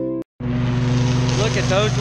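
Guitar music cuts off a quarter of a second in. A commercial stand-on lawn mower's engine then runs steadily, and a man's voice starts near the end.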